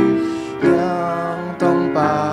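An assembly singing the school song with piano accompaniment. The piano strikes a new chord at the start, at just over half a second and again near the end.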